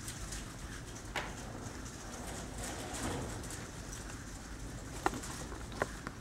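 Steady, fairly quiet room noise of a large, busy hall, with a few faint sharp clicks about a second in and twice near the end.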